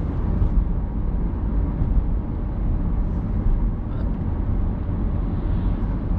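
Steady low rumble of a Peugeot car in motion, heard inside the cabin: road and tyre noise with the engine running off-throttle in gear, the accelerator just released to coast on engine braking.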